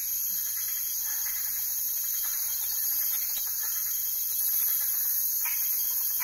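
A large swarm of bats in flight calling together, a steady high-pitched chorus of many squeaks that blends into a hiss.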